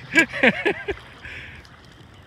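A man's short laugh in the first second, then the faint steady rush of river current around the boat.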